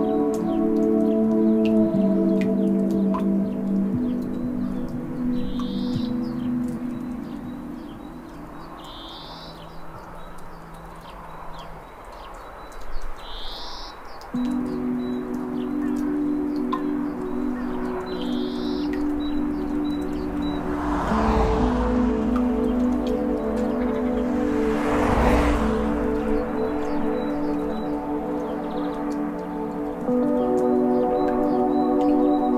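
Slow ambient healing music of held, ringing chords that fade down in the middle before a new chord comes in about halfway. Four short high chirps sound a few seconds apart in the first two-thirds, and two rushing swells of noise rise and fall in the last third.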